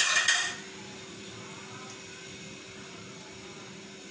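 A short clatter of kitchenware as a container is handled beside the cooking pot, then a steady faint hum with one low held tone.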